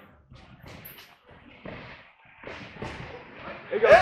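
Wrestlers scuffling on a mat, with a few soft thuds of bodies and feet hitting it as they go down in a takedown, and faint voices; a man's voice starts near the end.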